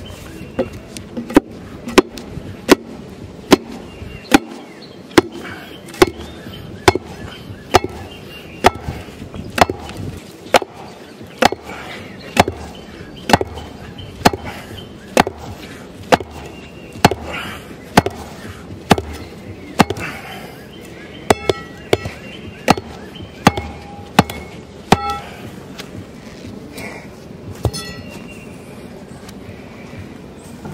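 Tamping bar pounding the backfilled dirt around a wooden fence post to pack it down, a sharp strike about once a second. The strikes stop a few seconds before the end, with one last strike after.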